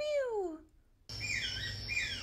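A person imitating a bird call, a short voiced squawk that falls in pitch. After a short gap, about a second in, a field recording of a real sharpbill begins: a thin high note held steady, with lower notes stepping up and down beneath it, over background hiss.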